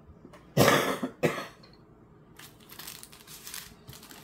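A woman coughing twice, a loud harsh cough then a shorter one, followed by soft rustling of plastic packaging.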